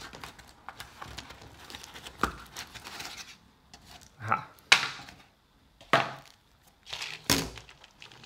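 Hands rustling in a cardboard box and handling a stack of acrylic plates in plastic wrap, with several sharp knocks as things are set down on a wooden table, the loudest a little before the middle.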